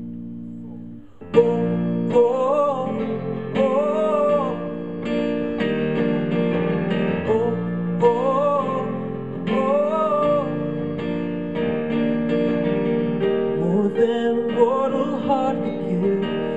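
Live band playing the instrumental intro of a contemporary Christian pop song: a held keyboard chord, then the band coming in with keyboard chords and electric guitar about a second in. A short rising-and-falling melody phrase repeats over the chords several times.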